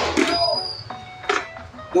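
Clear visor of a KYT NFR full-face motorcycle helmet being lifted, with one short click about a second in, over low background music and a brief spoken sound at the start.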